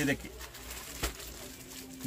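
A pigeon cooing faintly in low tones, with a single short knock about a second in.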